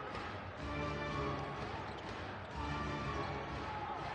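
Arena music over the gym's PA, a low phrase repeating about every two seconds, with a basketball bouncing on the hardwood court.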